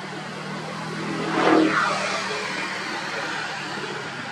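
A vehicle passing by: a steady hum grows to its loudest about a second and a half in, then fades away.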